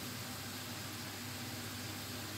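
Steady, even sizzle of potato strips frying in vegetable oil in a pan.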